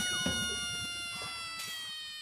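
Cartoon sound effect: a ringing tone with several overtones, sliding slowly down in pitch and fading away.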